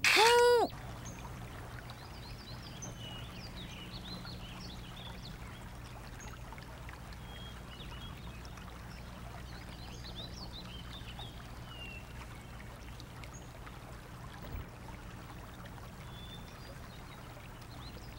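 Scattered high bird chirps over a steady low background hum. It opens with a brief, loud pitched tone that rises and falls in well under a second.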